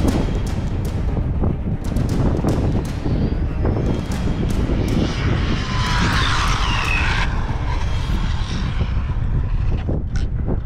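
Wind rumbles on the microphone throughout. About five seconds in, the high electric whine of the Arrma Limitless RC car's dual brushless motors comes in as it passes at speed, its pitch bending up and then dropping, and it cuts off suddenly about two seconds later.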